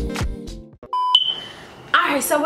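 Background music ending about half a second in, then a short electronic beep followed by a higher ringing tone that fades away.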